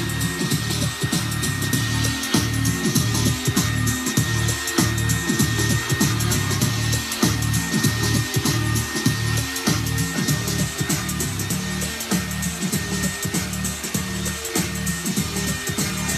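A handheld hair dryer running: a steady high whine over rushing air, with music playing underneath.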